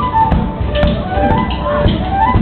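Tap shoes striking the stage floor in quick, irregular rhythms, improvised against a live flute playing short melodic phrases.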